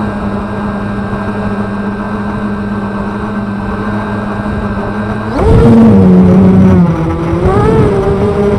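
Electric motors of an FPV250 quadcopter on 6x3 carbon propellers, whining steadily at a low, even pitch while it rests in the grass. About five seconds in they throttle up sharply and get louder, and the pitch then dips and rises as the quad lifts off.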